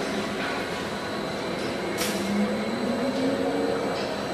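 Automatic tray-wrapping packaging machine running steadily, with a sharp click about two seconds in followed by a motor hum that rises slightly in pitch for over a second as the aluminium tray is moved through.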